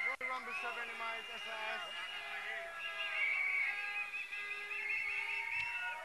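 Faint voices and music in the background, with one sharp click just after the start.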